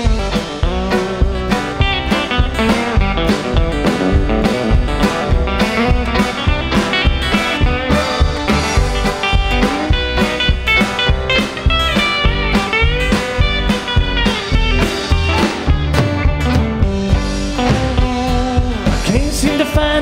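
A live country-rock band playing an instrumental break: bowed fiddle, acoustic and electric guitars, upright bass and a drum kit keeping a steady beat, with sliding bent notes in the lead line about midway.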